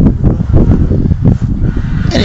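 Loud, irregular low rumbling noise with many short knocks running through it.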